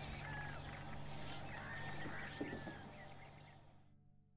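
Small birds chirping and whistling, several short calls overlapping, fading out near the end.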